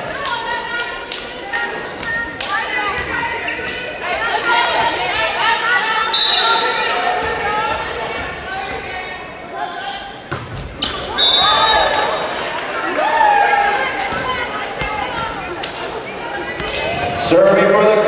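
Indoor volleyball game in an echoing gymnasium: indistinct voices of players and spectators calling and chattering throughout, with sharp thuds of the volleyball being bounced and struck, the clearest about halfway through. Voices grow louder near the end as a rally finishes.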